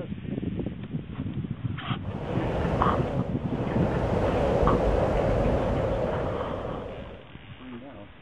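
Wind buffeting the microphone: a gust that builds about two seconds in, holds, and dies away near the end.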